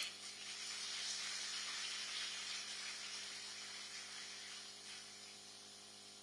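Audience applause that comes in as the talk pauses, then slowly dies away over several seconds.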